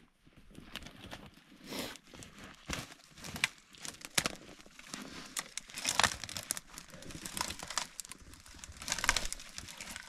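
Irregular rustling, crinkling and crunching as a person moves about in snow and brushy branches, with scattered sharp clicks and snaps.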